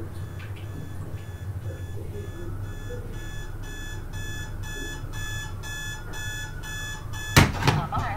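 Electronic alarm clock beeping about three times a second, growing louder, until a loud thump near the end cuts it off.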